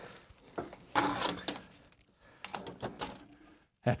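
Metal equipment being handled: a scraping clatter about a second in as a battery box is set onto a metal computer chassis, followed by a few lighter knocks and clicks.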